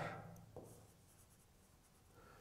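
Faint strokes and light taps of a pen on a writing board as small dots are drawn, mostly in the first second, then near silence.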